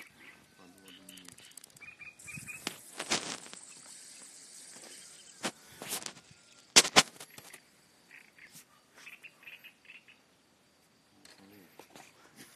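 Several sharp knocks and a rustle of the phone being handled, the loudest a double knock about seven seconds in, with faint short bird chirps in the background.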